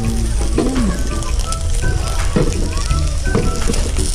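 Chicken yakitori skewers sizzling over a charcoal grill, a steady hiss, mixed with background music.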